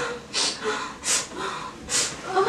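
A young woman crying: three sharp, sobbing intakes of breath, about two-thirds of a second apart, with faint whimpering between them.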